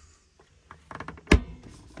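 Overhead wood cabinet door in an RV shut with a few light knocks and then one sharp, solid thunk just over a second in.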